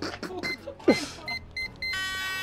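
Four short, high electronic beeps in the second half, each a steady single tone. Before them comes a man's laughing voice with a loud, falling vocal sound about a second in.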